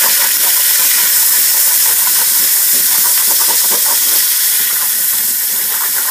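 Hot oil and tomato paste sizzling hard in a frying pan just after a splash of broth has been poured in: a steady, loud hiss with fine crackling, easing a little toward the end.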